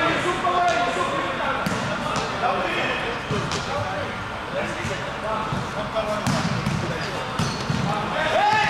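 Players' voices calling and chattering across a large gym, broken by several sharp thumps of a volleyball.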